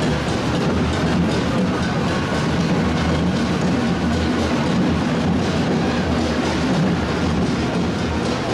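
Modern farm tractor's diesel engine running steadily under load as it tows a parade float, a continuous low rumble with no breaks.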